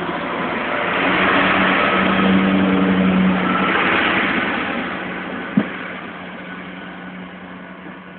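Class 142 Pacer diesel multiple unit pulling away, its underfloor diesel engines running under power with a steady drone. It is loudest as it passes in the first few seconds, then fades as it draws away, with a single short knock about five and a half seconds in.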